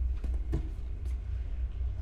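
A low, steady rumbling drone, with two faint short knocks about a quarter and half a second in.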